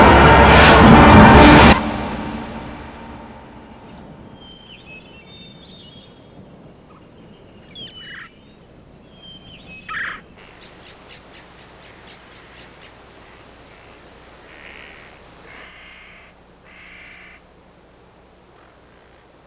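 Loud music with a steady beat that cuts off about two seconds in and dies away, followed by quiet outdoor ambience with scattered bird calls: a few short chirps, two louder calls, and a burst of harsher calls near the end.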